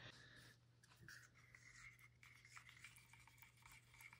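Faint scratching and small clicks from a wooden chopstick stirring acrylic paint inside a plastic paint bottle.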